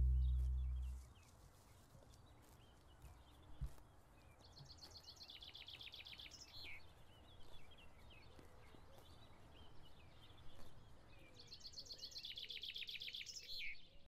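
The last note of the music fades out within the first second. Then faint birdsong over a low background hiss: two rapid trills several seconds apart, each ending in a falling note, with scattered small chirps. There is a soft low bump about three and a half seconds in.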